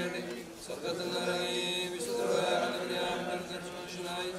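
Liturgical chanting of funeral prayers, sung on slow, drawn-out notes. A new phrase begins about a second in.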